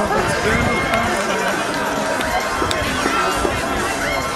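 Indistinct voices calling out over music that plays throughout, with no single clear event.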